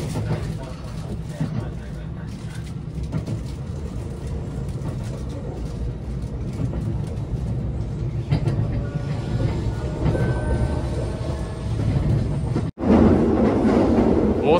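Interior of a JR West 289 series electric train: a steady low running rumble. About eight seconds in, thin whining motor tones join it as the train pulls away from the station. Near the end the sound cuts out for a moment and comes back louder.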